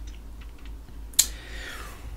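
A single sharp click of a computer key about a second in, with a few fainter ticks before it.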